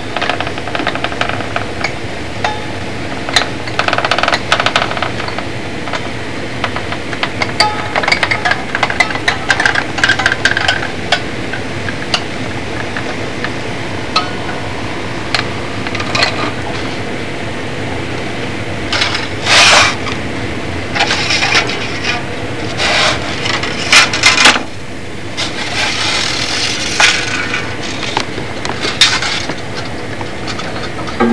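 A hot wire scraping and rubbing along a wing-rib template as it is drawn through a foam block, in irregular strokes with many small clicks, over a steady hum.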